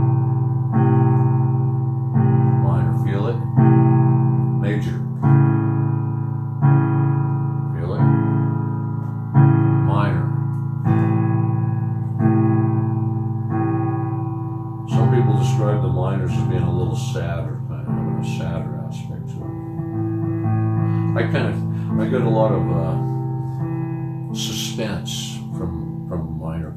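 Roland electronic keyboard playing sustained piano-voiced chords, struck again about every one and a half seconds and fading between strikes. These are A major and A minor chords, a half step apart. In the second half the playing turns less regular and a man's voice sounds along with it.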